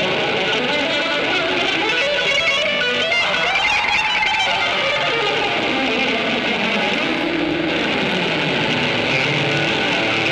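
Live rock band playing, led by electric guitar, with a guitar line that climbs and then falls away in the middle.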